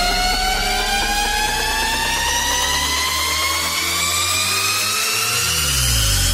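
Trap remix build-up: a synth riser climbing steadily in pitch throughout, with the bass falling away in the middle and sweeping back in near the end.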